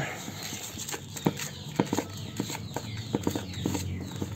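A plastic spoon stirring a moist chicken feed mix of rice, azolla and feed crumbles in a plastic basin: irregular clicks and scrapes of the spoon against the basin.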